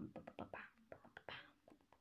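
A faint whispering voice in short bursts with a few soft clicks, dying away about one and a half seconds in, leaving near silence.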